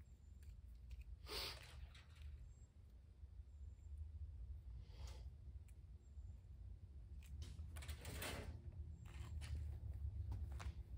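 Faint handling noise of a power tool's cord being uncoiled and handled, a few brief rustles and clicks, the loudest about a second and a half in and near the end, over a low steady hum.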